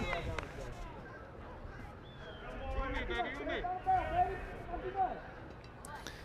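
Faint, distant chatter of voices, with a few light knocks near the start.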